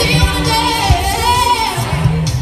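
An a cappella group singing through microphones: a female lead voice with a wavering melody over backing voices holding steady low notes.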